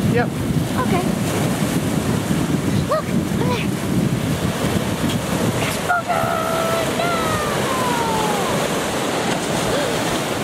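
Sea waves breaking and washing over shoreline rocks at the foot of a concrete wharf: a continuous rushing surf.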